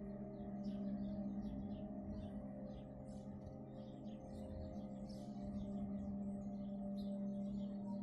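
Ambient drone music of sustained ringing tones, like a singing bowl or gong, held steady throughout. Many short bird chirps run over it.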